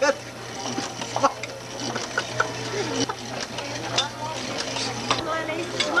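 Busy deli-counter clatter: scattered clinks and knocks of dishes and utensils over background voices and a steady low hum.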